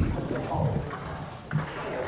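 Table tennis rally: a plastic ball clicking off rubber paddles and the table in a quick back-and-forth, several sharp knocks within two seconds.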